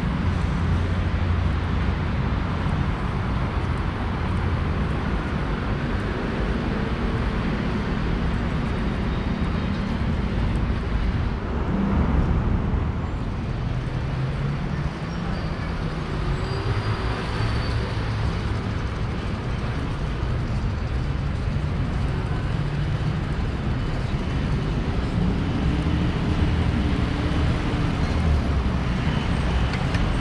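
Urban road traffic: a steady low rumble of motor vehicles, with engines rising and falling in pitch as cars and buses pass, around the middle and again near the end.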